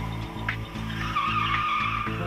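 Car tyres squealing: a wavering high screech begins about a second in. It sits over background music with a steady pulsing beat.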